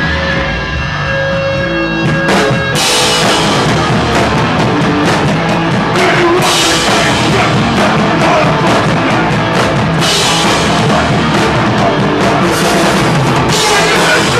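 Live powerviolence band playing loud, distorted and fast on drums and electric guitar. The first few seconds are held, ringing notes; the full band crashes in about three seconds in, with cymbal crashes again around six and ten seconds.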